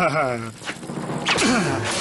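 Cartoon voice sounds, with a short whack about two-thirds of a second in: a sound effect for a kick.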